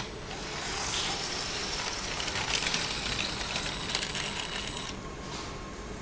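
Small electric motor of a LEGO model train whirring, with its wheels clattering on plastic track. The sound fades near the end.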